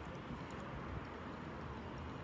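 Steady outdoor background noise: a low rumble with a faint hiss, unchanging throughout, with no distinct event standing out.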